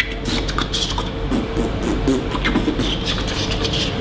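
A man beatboxing: quick, irregular mouth clicks, pops and hisses, several a second.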